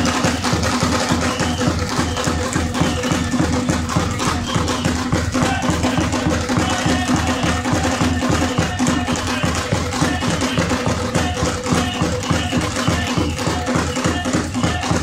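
Traditional Mozambican drumming: several hand drums played together in a fast, steady rhythm.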